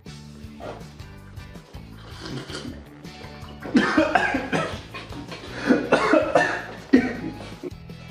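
A man coughing and spluttering over a sip from a mug: several short coughs starting about four seconds in, over steady background music.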